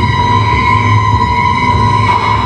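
Live electronic music from synthesizers: a held, high siren-like tone over a steady, loud low bass drone, with no beat standing out.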